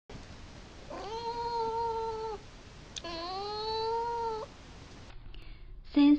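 Domestic cat meowing twice: two long drawn-out calls of about a second and a half each, the second rising slightly in pitch.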